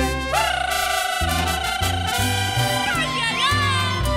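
Live mariachi band playing: violins with guitar and guitarrón bass under a long held, wavering high note that slides down about three seconds in, followed by brief swooping slides.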